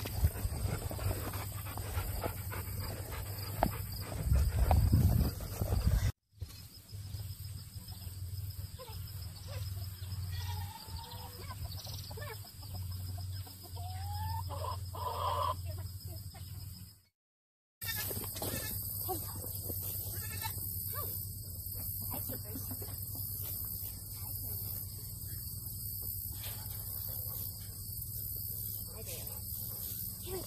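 Hens clucking with short pitched calls around a chicken coop, over a steady high insect hum, broken by two brief silences.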